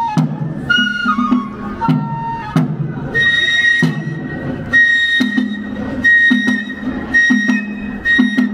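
Kagura festival music: a Japanese bamboo transverse flute plays a melody of held notes, first in short falling phrases, then repeating a high held note, over a steady beat of drum strokes.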